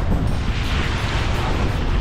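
Wind buffeting the microphone over water rushing and splashing along a sailboat's hull as the bow drives through choppy sea and throws spray over the bow. The splashing swells about halfway through.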